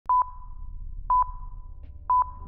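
Countdown-leader beeps from a video intro: two short, sharp beeps of one steady pitch, exactly a second apart, timed to the numbers counting down.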